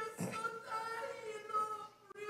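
A high-pitched voice in held notes that glide and break off, with a brief rush of noise just after the start.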